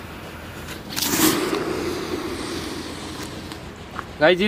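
Small Tim Tim brand chatar firework burning in a cement hole. It flares about a second in with a loud fizzing rush that dies away over the next two seconds.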